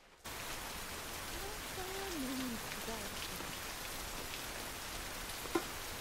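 Steady rain falling, starting suddenly a moment in, with a faint voice under it about two seconds in.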